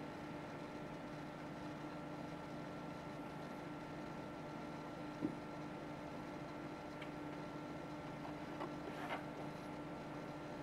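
A steady electrical hum with a few faint steady tones: room tone while the data terminal boots. A single soft click comes about five seconds in, and a couple of faint small knocks come near the end.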